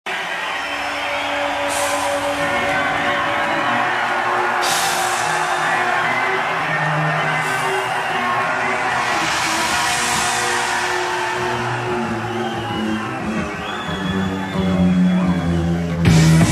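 Live rock recording at the start of a song: sustained instrument tones in a hall, with the band's sound swelling louder near the end.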